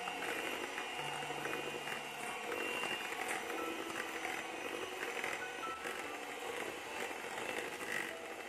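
Panasonic MK-GB1 electric hand mixer running at a steady speed, its beaters whisking eggs into creamed butter-and-sugar cake batter, with a steady high motor whine.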